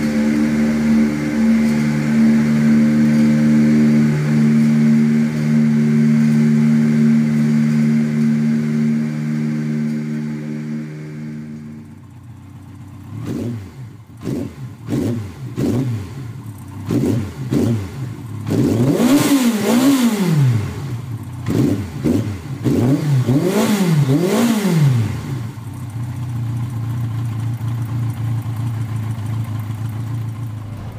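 Yamaha XJR1200's air-cooled inline-four running through Sato Racing oval titanium aftermarket exhausts. It idles steadily, then breaks off about twelve seconds in. A run of short throttle blips follows, then four sharp revs that rise and fall back in two pairs, before it settles to idle again.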